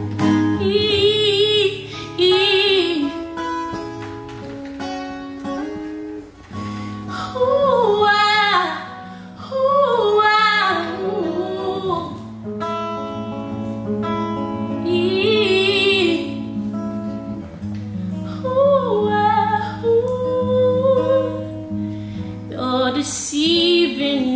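A woman singing soul vocal runs, the pitch sliding and wavering with vibrato, over an acoustic guitar accompaniment.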